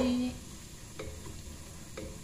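Chopped garlic sizzling in a little oil in a pot as it is stirred with a wooden spatula, with a couple of faint knocks of the spatula against the pot. A sung note trails off just at the start.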